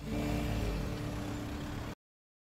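Street traffic: a motor vehicle's engine running steadily over road noise. It cuts off abruptly just before the end.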